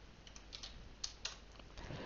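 A handful of faint, separate keystrokes on a computer keyboard, typing and entering a short terminal command.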